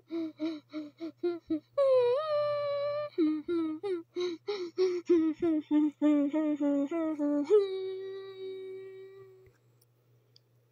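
A voice humming a short, bouncy tune in quick, clipped notes, with one sliding note about two seconds in, ending on a long held note that fades out near the end.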